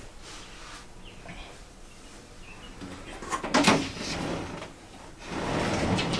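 Glass sliding shower door rolling along its track: quiet at first, then a loud slide about three and a half seconds in and a second, longer slide near the end.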